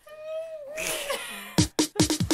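A short cat's meow, one held call that dips at the end, then electronic dance music starts about one and a half seconds in with a heavy kick drum beat.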